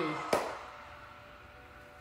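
A single sharp click about a third of a second in, as the end of a voice and music cuts away; faint held tones then fade out to near quiet.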